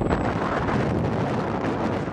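Steady rush of wind buffeting the microphone of a phone held in a moving car, over the car's road noise.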